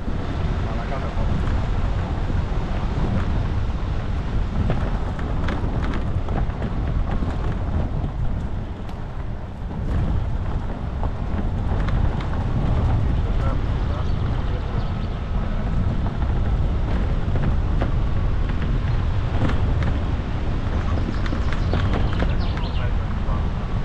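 Car driving over a rough gravel track: a steady low rumble of engine and tyres, with frequent small knocks and rattles from the bumpy surface.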